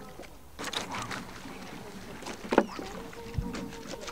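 Clothes being hand-washed in water in a metal wheelbarrow: water sloshing and splashing as wet cloth is scrubbed, with scattered small knocks and one sharp knock a little past halfway, and a steady held tone in the last second or so.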